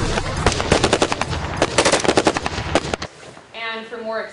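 Light machine guns firing bursts of automatic fire: two rapid strings of shots, the second longer, which cut off abruptly about three seconds in.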